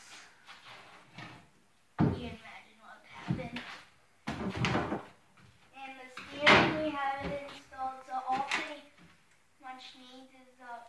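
Several sudden thumps and clatters of someone moving about and pressing on an aluminum boat's hull and deck, the loudest about six and a half seconds in, with brief snatches of a voice between them.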